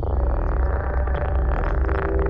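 Minimal tech-house music: a deep, rolling synth bassline held steady under layered synth tones.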